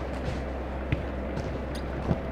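Steady low background hum with a few faint thuds, the clearest about a second in.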